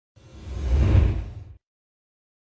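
A whoosh sound effect for an animated logo intro, with a deep low rumble underneath, swelling to a peak about a second in, then fading and stopping suddenly just past a second and a half.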